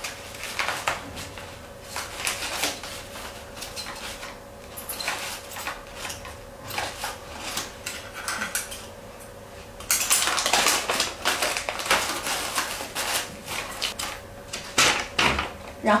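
Newspaper-print wrapping paper crinkling and rustling in the hands as a bouquet is handled and tied with yarn, in short irregular crackles, with a denser stretch of rustling about ten seconds in.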